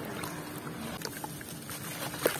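Hands squishing and swishing through wet sand-cement slurry in a tub of water, a steady watery swish with a few faint crackles.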